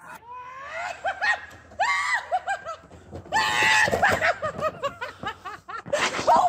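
A woman shrieking and laughing in short repeated bursts while riding down a long metal slide, with the loudest, longest shriek about three and a half seconds in.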